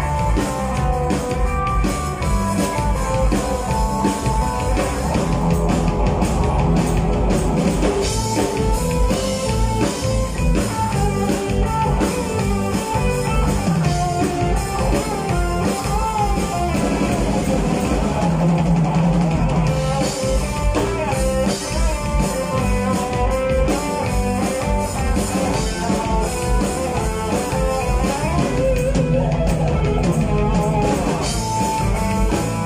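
Live rock band playing amplified through a PA: electric guitars, bass and a drum kit, with a lead melody line over a steady beat.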